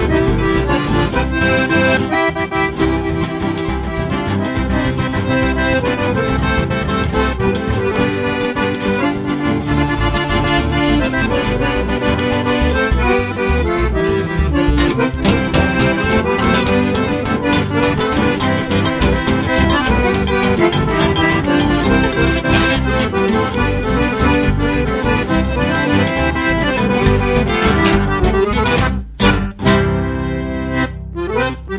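Chamamé-style polka played by an accordion-led band, with a lively, steady beat. About a second before the end the music briefly breaks off.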